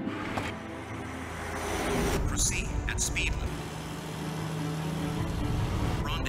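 Film music over the road noise of a semi-truck, which swells as the truck rushes past about two seconds in.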